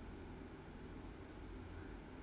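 Faint, steady room tone of a lecture hall: a low hum with a soft hiss and no speech.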